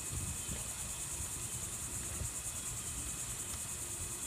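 Steady, high-pitched insect chorus with a fine, rapid pulse, with a faint low rumble underneath.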